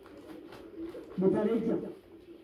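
A woman's voice through a public-address microphone: after a short pause, one brief, low vocal sound lasting under a second, about a second in.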